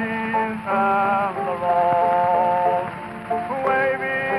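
Early acoustic recording (1903) of a song played back from a 78 rpm gramophone record: held melody notes with a few slides in pitch, over steady surface hiss and crackle.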